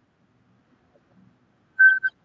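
Two short, loud high-pitched tones near the end, the first longer and the second a brief repeat of the same pitch, like a beep or whistle signal.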